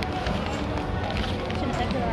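Wind buffeting a phone's microphone in a steady low rumble, with indistinct voices in the background.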